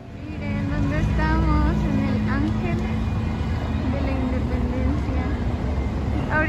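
City street traffic: a steady low engine rumble of passing and idling vehicles, mixed with the voices of people nearby, starting abruptly just after the start.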